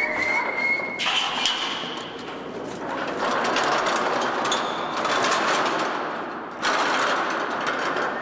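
A steel rolling scaffold pushed across a concrete floor: its casters rumble and the metal frame rattles and clanks, with a few brief high squeals.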